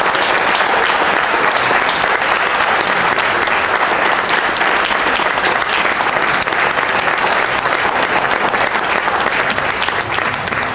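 Audience applause: steady clapping from many hands, continuous and unbroken.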